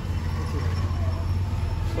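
A bus engine running, a steady low hum heard from inside the driver's cab.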